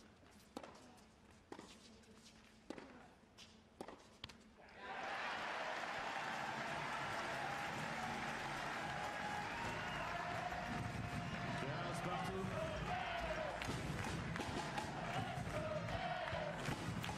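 A tennis rally: about six sharp strikes of racket on ball over the first few seconds. About five seconds in, the crowd bursts into cheering and applause, with shouting voices, that carries on.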